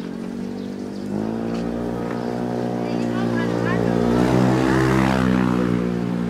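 A motor vehicle's engine passing close by: a steady hum that comes in about a second in, grows louder to a peak near the end and then eases a little.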